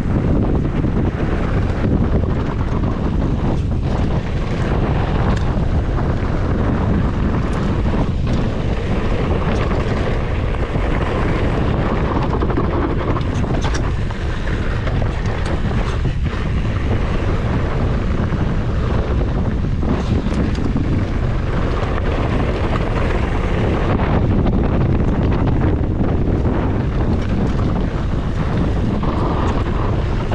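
Wind buffeting the microphone of a mountain bike speeding downhill, mixed with the tyres rumbling over loose, rocky dirt and occasional sharp knocks and rattles from the bike.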